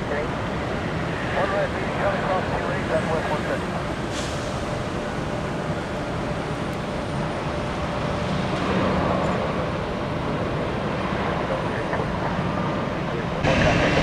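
Steady rumble and hiss of airliner jet engines at taxi power, mixed with road traffic hum; it steps up louder just before the end.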